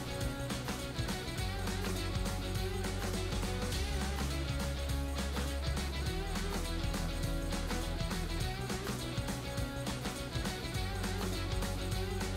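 Background music: a guitar-led rock track with a steady beat and a bass line.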